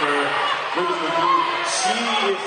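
Mostly a man's voice speaking, like live sports commentary, over steady hall noise.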